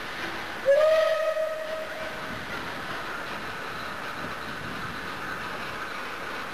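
Steam locomotive whistle: one blast of about a second and a half, starting just under a second in. It sounds over the steady running noise of the train.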